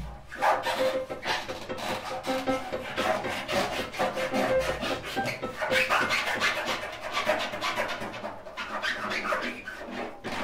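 Free-improvised music of scraping, rubbing sounds and busy clattering percussion: a grand piano played inside on its strings by hand, with a drum kit. A single note is held for several seconds through the first half.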